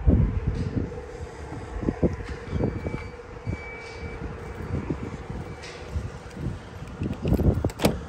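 Power-folding rear seats' electric motors humming steadily as the seat backs fold down, stopping near the end, with scattered low thumps over them.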